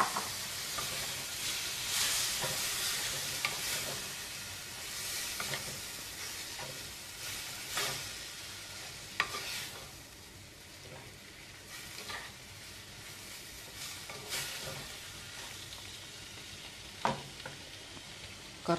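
Squid pieces frying in spiced masala in a pot, sizzling while a spatula stirs and scrapes through them with scattered clicks. The sizzle slowly dies down.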